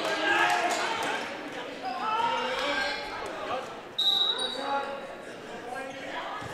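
Voices of spectators chattering in a large gym, then, about four seconds in, a short referee's whistle blast signalling the server to serve.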